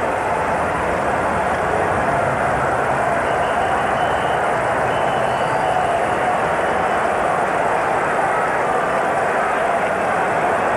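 Steady noise of a large baseball crowd in the stands, holding at one level throughout.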